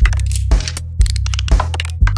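Electronic music with a deep, sustained bass line and a kick drum about twice a second. Many short clicks and hi-hat-like ticks sit over it.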